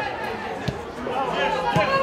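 Voices and chatter from a football match broadcast, with two short sharp knocks, one under a second in and one near the end.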